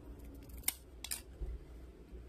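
Plastic back cover of a Samsung Galaxy A20 being pried off the frame with a thin pry tool. There are two sharp clicks a little past a third of the way in and again about half a second later as the edge comes loose, over light scraping and handling.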